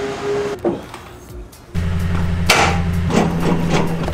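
Hard knocks and clanks from a boat trailer's metal hitch gear being handled, the loudest about two and a half seconds in and a few more near the end, over a steady low hum that starts abruptly partway through.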